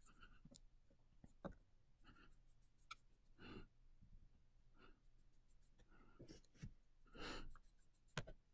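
Very faint rustling and light clicks of a palm rolling a small ball of polymer clay in circles on a plastic transparency sheet, with a few short scuffs scattered through, the clearest about a second before the end.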